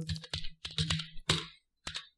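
Computer keyboard keystrokes: a quick run of key presses as a sudo password is typed, then one separate press near the end that enters it.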